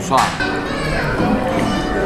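Indistinct talking voices that the recogniser could not make out, with a child's voice among them.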